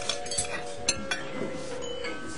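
Glassware and cutlery clinking lightly at a dinner table, with a few sharp clinks about half a second and a second in.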